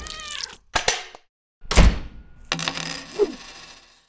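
Cartoon sound effects: a cat's meow falling in pitch, then sharp metallic clinks and a loud, deep thud.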